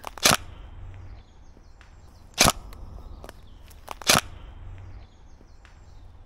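Tokyo Marui MP5SD NGRS airsoft electric gun firing three single shots, roughly one every two seconds: each a short, sharp mechanical clack.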